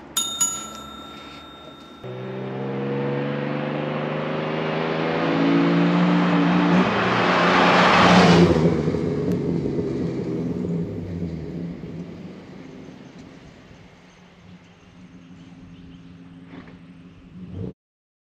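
Ford Barra 4.0-litre straight-six in an FJ40 Landcruiser accelerating toward the camera along a gravel road, its engine note rising as it comes. It passes loudest about eight seconds in, with tyre noise on gravel, then fades away.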